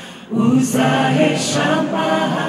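Mixed choir of women's and men's voices singing a Kinyarwanda gospel song a cappella. After a brief breath at the start, the voices come back in together, with crisp sibilants on the words.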